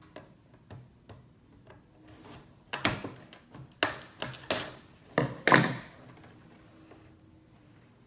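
Scissors cutting into the plastic and cardboard packaging of a toy box: a few faint clicks at first, then a run of louder snips and crackles between about three and six seconds in.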